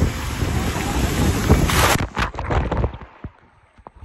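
Water rushing and wind buffeting the microphone during a ride down a water slide, ending in a splash into the pool about two seconds in. After the plunge the sound drops away sharply, muffled, with a few faint bubbly clicks.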